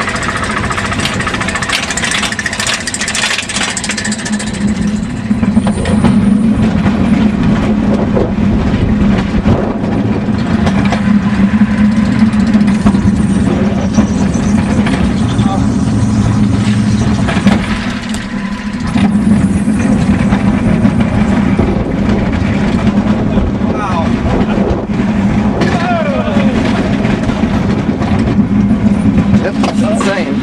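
Bobsled roller coaster ride: the car clatters over the chain lift for the first few seconds. From about five seconds in it runs fast along the track with a loud, steady rumble of wheels on the rails.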